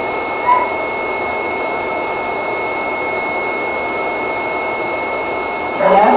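A steady machine hum with a thin, constant high whine running through it, and a single short beep about half a second in.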